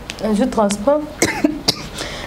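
A woman talking briefly, then a couple of short, sharp coughs about a second in.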